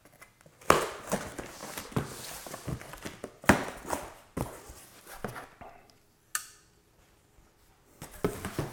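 Knife slicing through the packing tape on a cardboard box, then the cardboard flaps scraped and pulled open: a run of irregular sharp rips and scrapes, with a single click about six seconds in.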